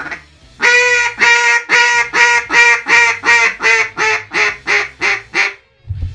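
Handheld duck call blown hard, like a mallard hen, in a long run of about fifteen loud quacks, roughly three a second. The first quack is drawn out, and the rest get shorter and a little softer toward the end. This is loud hailing at high-flying ducks in a V, which the caller says will rarely bring them in.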